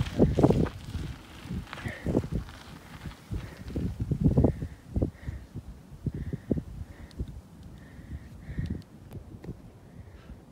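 Irregular low thumps and rumbles from a mountain bike rolling over a dirt trail, strongest about the first second and again around the middle, picked up by a handheld or helmet phone microphone as the rider slows to a stop.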